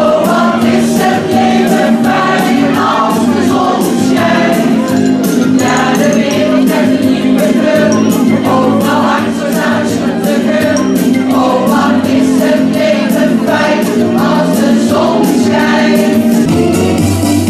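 A choir singing a song together, held notes in chorus, over an accompaniment with a steady beat.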